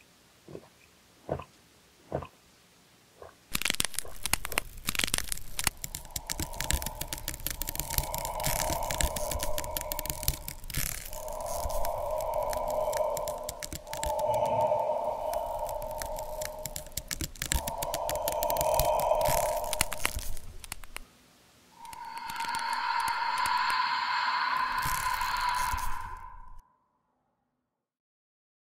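Horror-film sound effects of a body cracking, crunching and tearing, a dense continuous crackle, under four long strained cries. A louder, longer cry follows near the end, then everything cuts off suddenly into silence.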